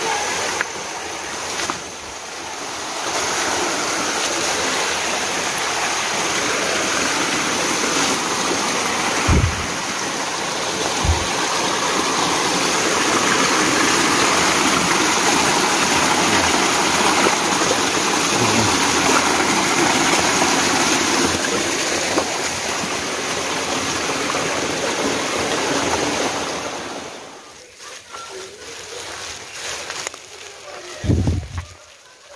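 Small rainforest stream splashing over rocks in a steady rush of water, falling away sharply near the end. A couple of low thumps come in the middle.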